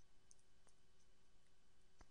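Near silence: faint room tone with a couple of faint clicks in the first second, from the computer mouse as the page is scrolled.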